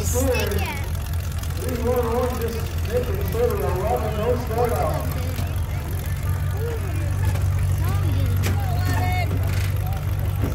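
Engines of demolition derby full-size cars running with a steady low rumble. People's voices come in over it from about two to five seconds in and again briefly near the nine-second mark.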